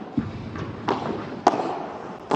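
Padel ball being played in a rally: a dull thump, then two sharp hits from rackets striking the ball and the ball hitting the court, over a faint hiss from the hall.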